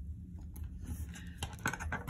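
Light taps and rustles of long fingernails and fingertips on planner paper as a sticker is pressed into place, a quick run of small clicks starting about half a second in and growing busier toward the end, over a steady low room hum.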